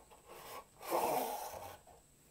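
Clear plastic packaging case rubbing and scraping as it is opened and its lid pulled away: a short faint rub, then a louder scrape about a second in that lasts most of a second.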